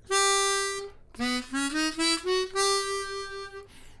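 Hohner chromatic harmonica playing a held G on the 3 blow, then a quick rising run of short notes that climbs back up to a long held G.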